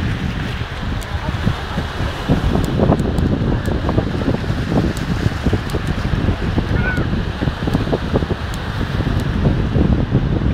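Wind buffeting the microphone in a heavy, uneven low rumble, with sea surf breaking on the shore beneath it.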